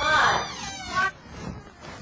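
A person's voice making a short rising, sing-song vocal sound, then a brief high squeak about a second in.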